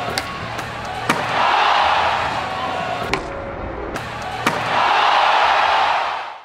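Skateboard tricks landing with sharp slaps of the board and wheels on the ground, once about a second in and again about four and a half seconds in. Each landing is followed by an arena crowd cheering for several seconds.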